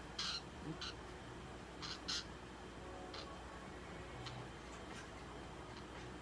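Budgerigar giving short chirps while held in the hand: several brief calls in the first three seconds, the loudest at the start and about two seconds in, then a couple of fainter ones.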